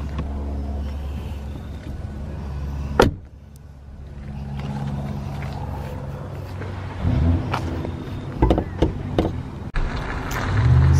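Jeep Compass engine idling with a steady low hum. A single loud knock comes about three seconds in, and several clicks and knocks near the end as the hood is unlatched and raised.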